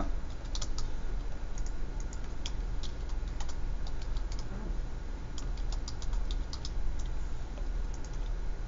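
Light, irregular clicks and taps in quick clusters, over a steady low hum.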